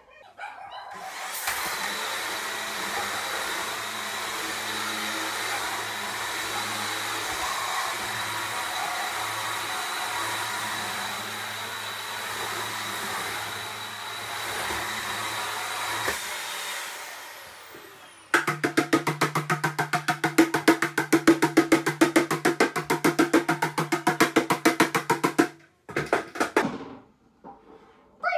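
A steady motor whirring with a thin high whine runs for about fifteen seconds, then fades out. After a short pause comes a louder, rapid rhythmic beating, about nine strokes a second over a low hum, for about seven seconds, then it stops abruptly. These are household noises made as distractions for a dog holding a stay on its cot.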